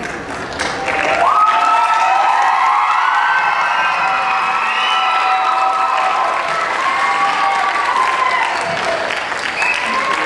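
Audience applauding and cheering. From about a second in, many high voices hold long cheers over the clapping, fading out near the end.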